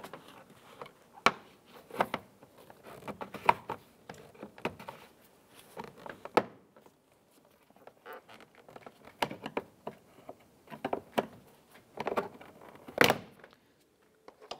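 A plastic pry tool working a plastic door trim piece loose from a 2001 Honda Civic's armrest: a scatter of small clicks and creaks as the clips give. A louder snap comes about a second before the end as the piece pops free.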